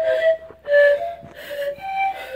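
Small wooden panpipes (minipan) blown by children, giving a handful of short, breathy notes at different pitches one after another, the loudest a little under a second in.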